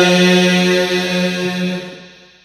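A single voice chanting, holding one long, steady note that fades out near the end.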